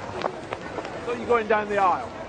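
Speech: a voice talking, mostly in the second half, over steady outdoor background noise.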